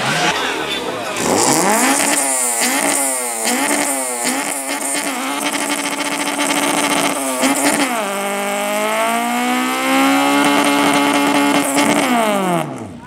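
Car engine revved in a run of quick rises and falls, then held at high revs, climbing slowly, for the last few seconds as the car spins its rear tyres in a smoky burnout.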